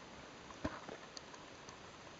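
Handling noise on a handheld camera: a sharp click about two-thirds of a second in and a softer one just after, with a few faint high ticks later, over a steady faint hiss.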